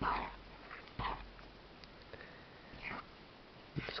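A spoon stirring thick, sticky candy dough of powdered sugar and honey in an enamel bowl: a few short, separate stirring noises about a second apart, the first the loudest.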